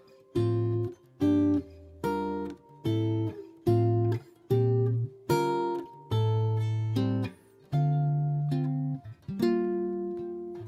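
Guild archtop jazz guitar playing a chord-melody line in plain quarter notes: about a dozen chords, each plucked and left ringing briefly before the next, a little under a second apart.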